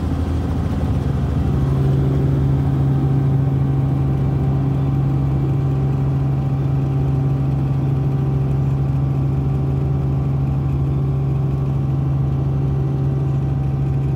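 Steady drone of a Robinson R44 Raven II helicopter's Lycoming IO-540 engine and rotors, heard from inside the cabin. A low hum comes up strongly about a second and a half in and then holds steady.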